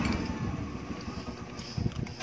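A steady motor hum fades out at the start. Then come eating noises: irregular low mouth and handling sounds close to the microphone, and a sharp click of a metal spoon against the plate near the end.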